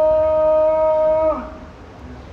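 A man's voice calling the adhan, the Islamic call to prayer, into a microphone, holding one long steady sung note that ends with a brief downward slide about 1.3 seconds in. After it, a short echo in the room fades out.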